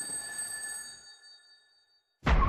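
A single bell-like ringing tone made of several steady pitches, struck just before and fading away over about a second and a half.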